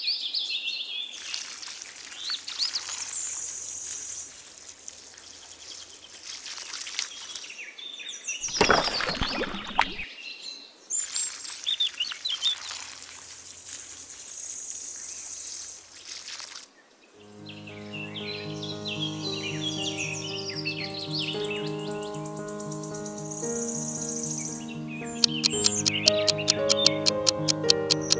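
Water trickling from a miniature watering can, with birds chirping over it. Music with a steady beat comes in about two-thirds of the way through.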